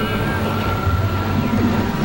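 Dense experimental synthesizer noise music: layered low drones under a steady high tone, with many short sliding pitches scattered through it.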